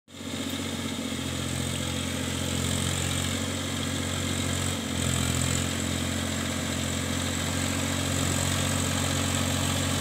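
Massey Ferguson 7250 tractor's three-cylinder diesel engine running steadily under load as it drives a rotavator puddling a flooded paddy field.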